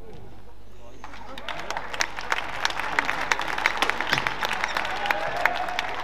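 Scattered hand clapping from spectators in a sports hall. It starts about a second in, is thickest in the middle and thins out near the end.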